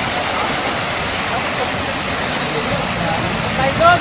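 Steady rush of running water, with faint voices behind it and a short louder voice near the end.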